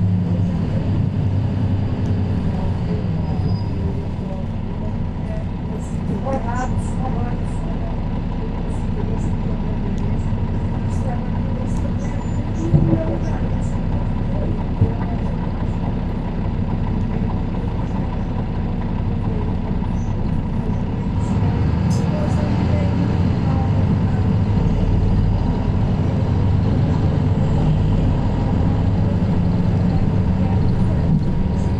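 Inside a 2014 Mercedes-Benz Citaro C2K city bus on the move: its OM936 diesel engine and ZF Ecolife automatic drivetrain running with a steady low rumble, easing off through the middle and building again about twenty seconds in, with scattered small clicks and rattles from the cabin.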